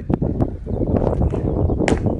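Low rumbling noise of wind and rustling on a body-worn microphone, with a couple of faint clicks and a brief hiss near the end.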